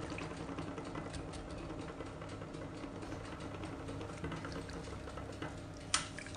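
Silicone whisk stirring a thin milk custard in a saucepan: the liquid sloshes, with light ticks and scrapes against the pan, and a sharp click near the end.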